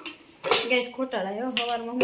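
A person's voice talking in drawn-out tones from about half a second in, with clinks of metal plates being handled.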